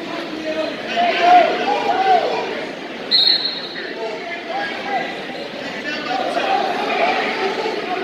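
Spectators talking and calling out over one another, several voices at once, with a brief high squeak about three seconds in.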